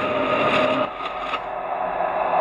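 Spirit box output: radio audio played backwards in real time through reverb, a garbled wash of hiss and sound with a couple of steady tones, dropping in level a little under a second in.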